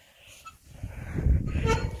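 Low rumbling handling noise on a phone microphone, building over the second half, as a woman hoists herself onto a playground swing, with a small strained sound of effort near the end.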